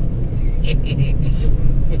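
A man chuckling quietly and breathily, over a loud steady low rumble.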